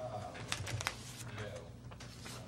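Quiet meeting room with a few sharp light clicks about half a second in, and a faint murmured voice, short and hum-like, at the start and again near the end.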